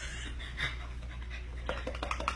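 A quiet stretch: a steady low hum under faint soft noise, with a few light clicks near the end.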